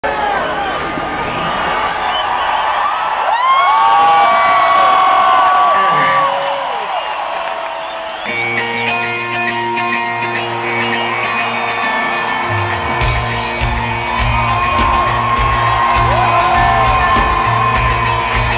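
Stadium rock concert crowd cheering, whooping and yelling. About eight seconds in, the band starts a song intro with steady held chords, and a pulsing bass beat joins a few seconds later while the crowd keeps shouting.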